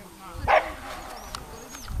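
A dog barks once, sharply and loudly, about half a second in.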